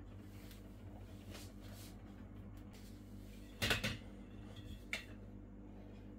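Faint room tone with a low steady hum, broken about two-thirds through by a short cluster of light metallic knocks and a single click near the end: a stainless steel pot full of milk being taken hold of and lifted.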